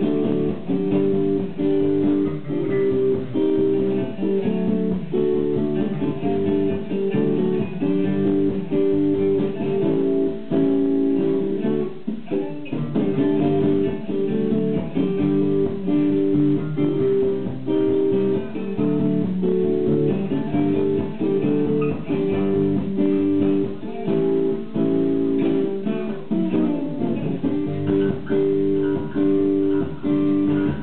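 Live instrumental playing: an acoustic guitar being strummed, with an electric bass guitar playing along, and no singing. The playing breaks off briefly about twelve seconds in.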